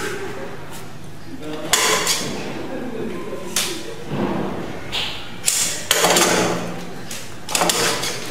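Gold lace border and cloth rustling as they are handled on a sewing table, with several short snips and scrapes of tailor's scissors trimming loose threads.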